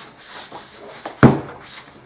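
Hands rubbing water over the leather of a wooden-core scabbard, a soft wet rubbing, wetting the leather down so the dye will go on evenly. A brief louder sound stands out a little over a second in.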